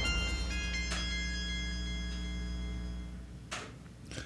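Tail of an electronic show-intro theme: a held chord with a couple of chiming notes, slowly fading out. A brief swish comes about three and a half seconds in.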